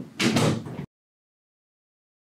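A door shutting: a sharp click, then a short, loud clattering burst that cuts off suddenly under a second in.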